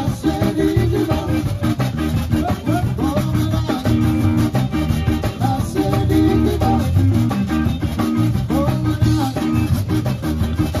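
Live zydeco band playing an up-tempo number on accordion, electric guitar, bass guitar and drum kit, amplified through a PA.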